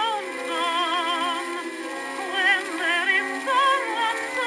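A woman singing with wide vibrato over instrumental accompaniment, from a 1913 acoustic-era record. The sound is thin, with no low bass.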